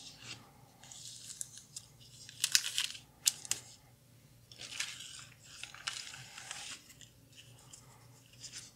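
35mm film negative strips and plastic negative sleeves handled on a sheet of paper: bursts of crinkly rustling, loudest as a run of sharp crackles about two and a half to three and a half seconds in.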